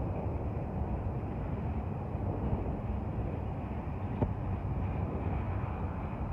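Freight cars rolling slowly past, a steady low rumble of wheels on rail, with one sharp click about four seconds in.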